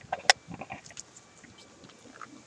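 A couple of sharp clicks and a rustle as a scratch-off ticket and the camera are handled, near the start, then faint background with a few soft ticks.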